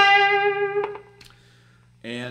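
Electric guitar played through an amplifier: the last notes of a lead phrase ring and die away within about a second, with a short pick click as they fade. A faint steady hum follows.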